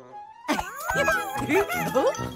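Cartoon creature squeaks: a flurry of short, high squeaky calls bending up and down in pitch, starting about half a second in, over children's background music. These are the fluffies' little cries as they fly onto and stick to Numberblock Five.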